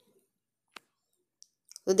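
Near silence broken by two faint, brief clicks, the first a little under a second in and the second about half a second later.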